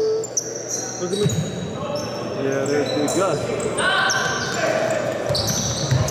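Basketball being dribbled on a wooden gym floor, with short high sneaker squeaks starting and stopping and players' voices in the background.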